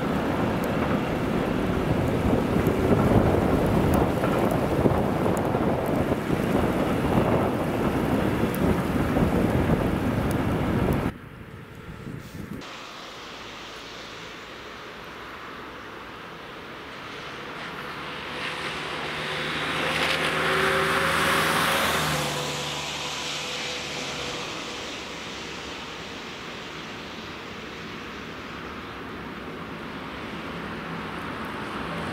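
Loud, steady rushing of wind on the microphone for the first ten seconds or so, which cuts off abruptly. After that, a quieter outdoor background in which a road vehicle passes, swelling to its loudest about twenty seconds in and then fading.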